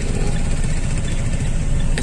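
A car's engine running, a steady low rumble heard from inside the cabin.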